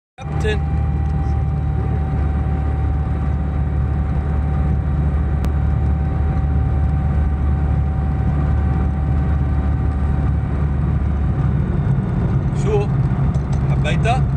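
Light aircraft's engine and propeller heard inside the cockpit during the landing rollout, a loud steady drone with a thin whine over it. The deepest part of the drone eases about eleven seconds in.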